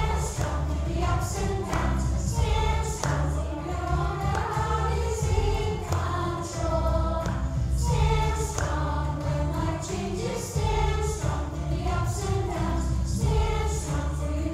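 Group of children singing a closing song together along with recorded backing music that has a strong bass.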